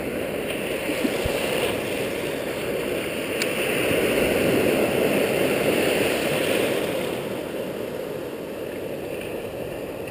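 Ocean surf washing in over the shallows: a steady rushing of breaking waves that swells as a wave surges in about four seconds in and eases off after about seven seconds.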